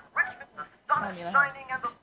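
A person's voice: two short spoken phrases with a brief pause between, softer than the talk that follows.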